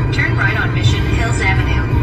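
Steady low rumble of a car driving at road speed, heard from inside the cabin, with a voice over it.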